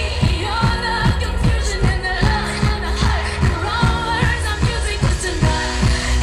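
Live pop band playing through a PA, with a steady kick-drum beat about two and a half times a second, and a woman singing a gliding, wordless vocal line over it.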